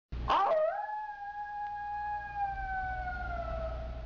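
One long howl-like cry that sweeps up at the start, then holds a steady pitch that slowly sags and fades, over a low steady rumble.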